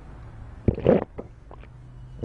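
A short, low murmured grunt from a person, about a second in, followed by a few faint clicks.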